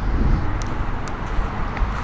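Low, uneven wind rumble buffeting the camera microphone, with a couple of faint clicks about half a second and a second in.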